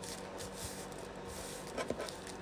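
Faint rustling and creasing of a paper coffee filter being folded and pressed flat on a table.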